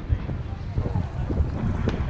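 Wind buffeting the microphone in a steady low rumble, with faint distant voices and a single sharp click just before the end.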